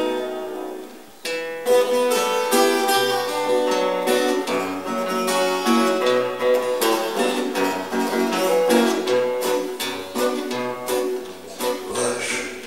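Two acoustic guitars, one nylon-string and one steel-string, playing a picked instrumental introduction to a song. The playing thins out briefly about a second in, then picks up again.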